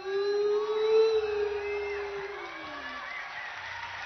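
A singer holds a long final note into the microphone. The note swells slightly, then slides down and fades out about two and a half seconds in, with faint whoops from the crowd.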